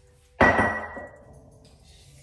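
A single sharp, loud knock about half a second in, with a short ringing tail that fades within a second.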